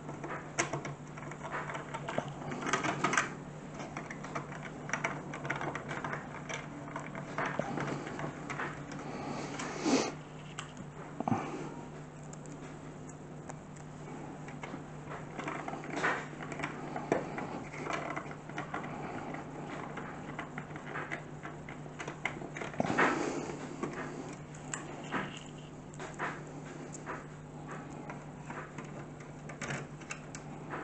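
Hand screwdriver driving small metal screws into a plastic PC case front panel: irregular ticks, clicks and scraping, with a few louder knocks, over a steady low hum.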